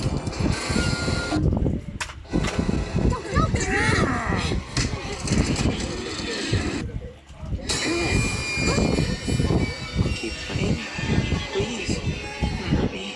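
Cartoon episode soundtrack: voices with background music and sound effects, cutting out briefly twice, about two seconds in and again about seven seconds in.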